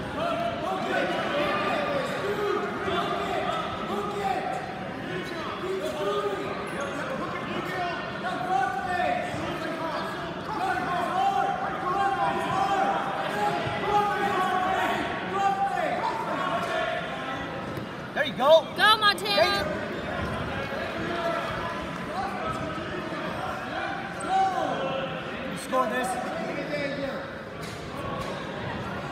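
Indistinct voices of coaches and spectators calling out in a large gymnasium hall during a wrestling bout, with a brief burst of loud yelling about two-thirds of the way through.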